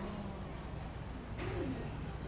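A pigeon cooing once, a short low call that dips in pitch about one and a half seconds in, over a steady background murmur.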